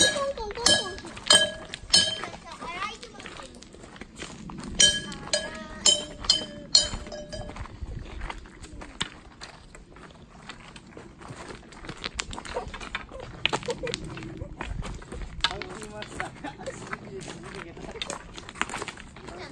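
Bear bells on a hiker's pack or stick jingling with each step, about ten sharp ringing chimes in the first seven seconds. After that come fainter clicks and crunches of footsteps on the stony trail.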